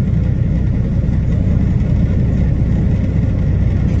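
Steady low drone of a truck's engine and tyres heard inside the cab while cruising at highway speed.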